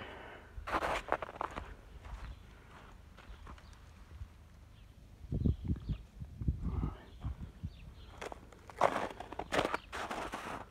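Footsteps in snow: irregular short crunches, with a run of low thumps in the middle.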